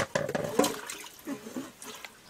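Water splashing and sloshing as a metal pot is handled among plastic basins of water, with a sharp knock at the start and smaller knocks after.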